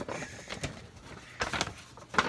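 Handling sounds of a cardboard toy box and its paper inserts being moved about, with a couple of sharp knocks about half a second in and near a second and a half in.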